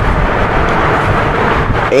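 Steady, loud rushing noise with a low rumble.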